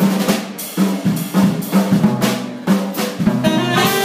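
Jazz drum kit taking a break, snare, bass drum and cymbal strikes, between tenor saxophone phrases in a swing tune; the saxophone comes back in right at the end.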